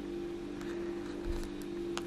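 Quiet room tone carrying a steady low hum, with a faint low bump about a second in.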